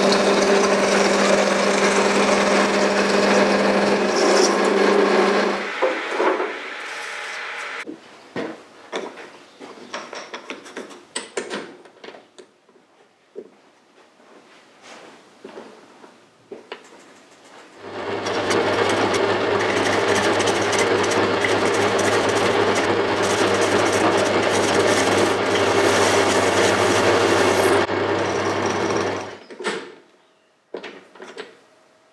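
Horizontal metal-cutting bandsaw running and cutting through thick PVC drainage pipe, stopping about five seconds in. Scattered clicks and knocks follow as the cut ring is handled and fitted into a lathe chuck. From about 18 seconds a metal lathe runs with the PVC ring in its chuck for about eleven seconds, then spins down.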